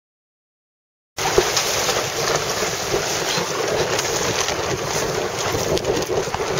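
Silence for about the first second. Then it cuts suddenly to steady wind buffeting the microphone on a sailing dinghy, with water splashing around the boat.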